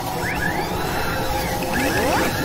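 Sound effects for an animated transition: dense mechanical whirring and clattering over a low rumble, with whooshing sweeps that rise in pitch and recur about every second and a half.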